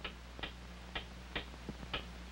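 A clock ticking steadily, about two ticks a second, over a low steady hum.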